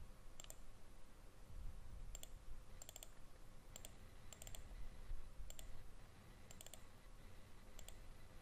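Faint computer mouse button clicks, about a dozen spread through, several in quick pairs.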